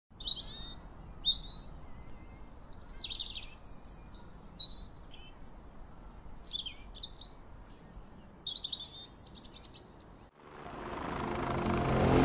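Songbirds singing, a run of varied high chirps, trills and down-sliding whistles. About ten seconds in the birdsong cuts off and a broad sound swells steadily louder.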